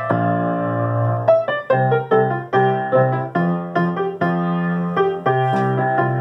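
Piano playing a song's vocal melody over a simplified chordal accompaniment, with a chord held through the first second and then a steady run of melody notes over low bass notes.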